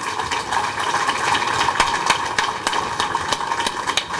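Audience applauding: many hand claps overlapping in a steady run.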